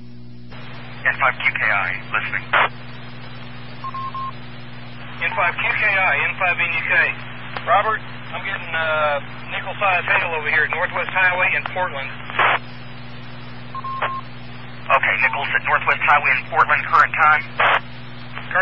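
Short voice transmissions over a two-meter amateur radio repeater, narrow and tinny and heard over a steady hum. A short single beep sounds twice, each a second or so after a transmission ends.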